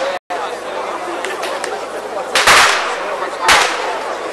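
A large crowd chattering, with two loud bangs: a longer one about two and a half seconds in and a short one a second later. The sound cuts out for an instant just after the start.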